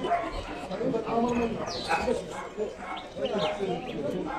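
Dogs barking and yipping in short bursts amid background chatter of people talking.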